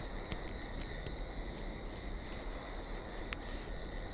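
Crickets chirping in a steady, continuous high drone, with a few faint clicks.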